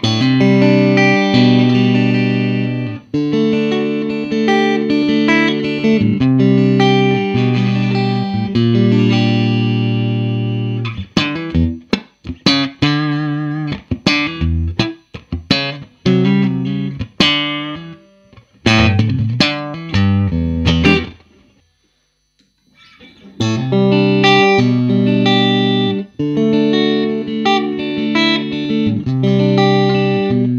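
Squier Classic Vibe '60s Stratocaster electric guitar played through an amp. Chords ring out for about the first ten seconds, then come as short, separated stabs. A brief pause falls about two-thirds of the way in, and ringing chords resume.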